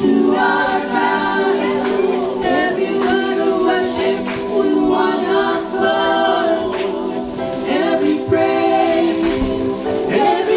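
A song sung by a group of voices, choir-like, playing steadily with no break.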